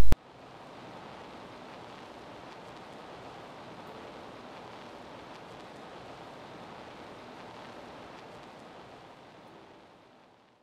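Steady faint hiss of background noise, with no whistling or voice, fading out near the end.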